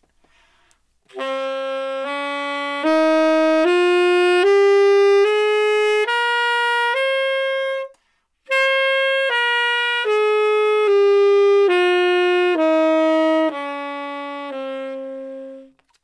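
Tenor saxophone playing the C Phrygian scale (C, D♭, E♭, F, G, A♭, B♭, C) one octave up in eight even held notes, starting about a second in. After a brief breath it comes back down the same notes to the low C.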